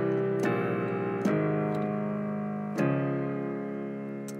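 Chords played on a keyboard, a bass walkdown by whole steps from C through B-flat and A-flat that resolves to D-flat, modulating up a half step from C. The chords change about half a second, a second and a quarter, and just under three seconds in, each left to ring and fade.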